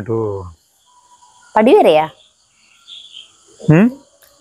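Crickets giving a steady, faint, high-pitched trill at night, between short bursts of a person's voice.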